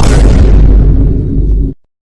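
Loud explosion-like boom sound effect, one noisy blast heavy in the low end whose highs fade over about a second and a half before it cuts off suddenly.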